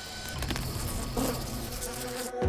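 A flying insect buzzing close by: a steady wing buzz that swells slightly about half a second in.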